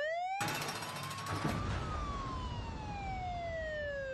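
Siren wailing as a sound effect over the show's transition graphics. It makes one slow upward sweep, then a long downward sweep, and starts to rise again just after the end, with a rushing noise underneath.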